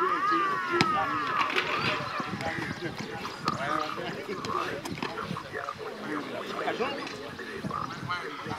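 Footballers' voices calling and shouting to each other on an open training pitch, opening with one long call that falls in pitch, over a background of overlapping voices. A few short knocks of balls being kicked.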